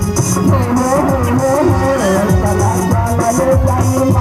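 Live band music at a stage show: a wavering melody over a steady, regular beat, loud throughout.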